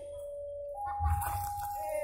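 Railway level-crossing warning alarm sounding a steady two-tone electronic signal, alternating between a lower and a higher tone about once a second, which signals that a train is approaching.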